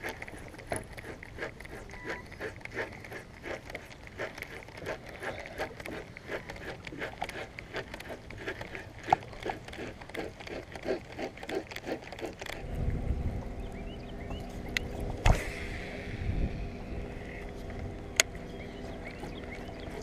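Choppy lake water lapping and ticking against a bass boat's hull. About two-thirds of the way through, a steady electric hum starts, the bow trolling motor running to push the boat along, with a couple of sharp clicks.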